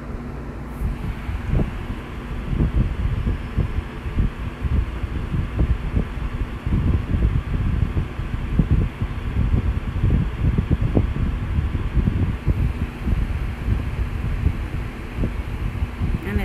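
Irregular low rumble and buffeting of wind or handling noise on a microphone, over a fainter steady hiss.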